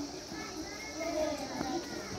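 Young girls' voices calling out together in a sing-song way as they play a train game in a line.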